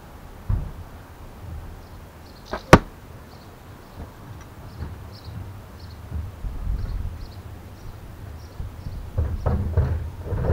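Carbon arrow striking the target with a single sharp thwack a little under three seconds in, a smaller click just before it, over a low rumble.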